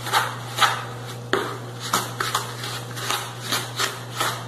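A bare hand mashing and kneading margarine into granulated sugar in a bowl, squishing and rubbing in short irregular strokes several times a second, creaming the sugar into the fat. A steady low hum runs underneath.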